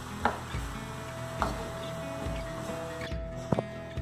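Soft background music with a held note, under three light knocks of a wooden spoon against a metal wok as diced vegetables are stirred.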